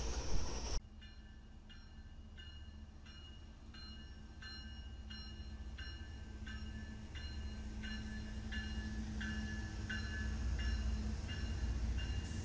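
Railroad grade-crossing bell ringing steadily, about three strikes every two seconds, over the low rumble and engine hum of a CSX diesel locomotive passing, growing louder as the train comes through. Under a second in, the noise of a different passing freight train cuts off abruptly.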